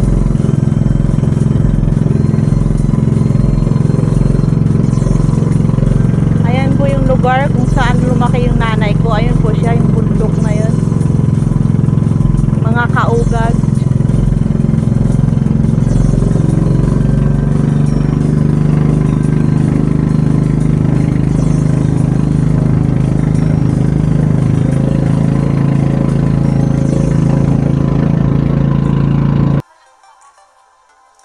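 Motorized outrigger boat (bangka) engine running steadily under way, a loud low drone. Voices call out briefly over it a few seconds in and again a little later, and the engine sound cuts off suddenly near the end.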